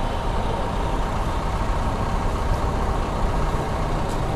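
A motor vehicle's engine runs steadily close by, a low, even sound that does not change.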